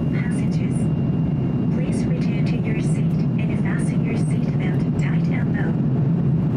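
Steady low rumble of cabin noise inside an Airbus A350-900 airliner in flight, from its engines and the airflow, with indistinct voices faintly in the background.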